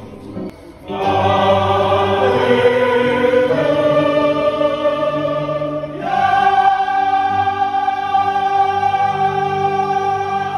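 A choir singing in parts, holding long sustained chords. The singing enters about a second in and moves to a new, louder chord about six seconds in.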